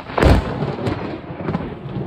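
Close thunderclap from a nearby lightning strike: a sudden sharp crack about a quarter second in, then a rolling rumble that carries on.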